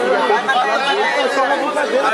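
Several people talking over one another: crowd chatter with no single clear voice.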